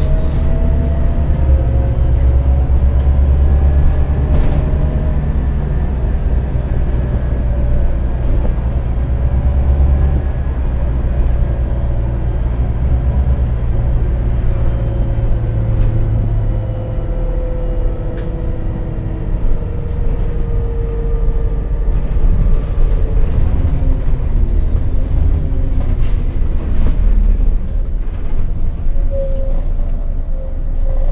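Renault Citybus 12M city bus heard from inside the passenger cabin: its diesel engine and drivetrain run under way with a deep steady drone, the pitch climbing in the first few seconds and sliding down later as the bus slows for a stop. A few sharp clicks and rattles from the cabin come through over it.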